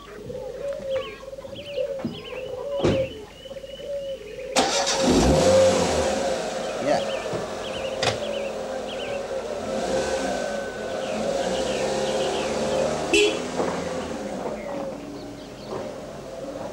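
A car engine starting about five seconds in and then running steadily, with birds chirping in the background.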